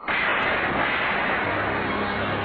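An explosion-like blast that starts suddenly and holds as a loud, steady rush of noise, with faint musical tones coming in under it near the end.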